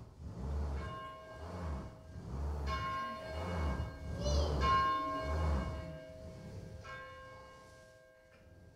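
A bell struck four times, about two seconds apart, each stroke ringing on in several clear tones and slowly dying away.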